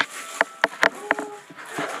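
Gift wrapping paper being torn open in several short, sharp rips.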